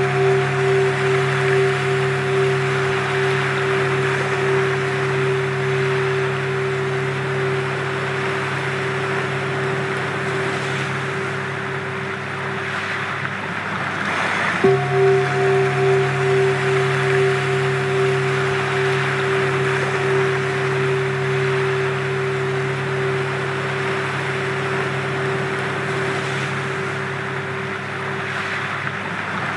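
Sound-healing frequency track: several steady pure tones held over a wash of surf-like noise. The tones fade just before halfway, the noise swells, and the same tones come back in.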